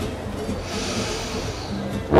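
A man sniffs in through his nose for about a second, a soft breathy hiss, over quiet background music.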